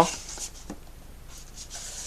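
Blu-ray cases rubbing and sliding against the neighbouring cases on a shelf as one is pulled out and the next is handled, quiet, with a couple of light clicks about half a second in.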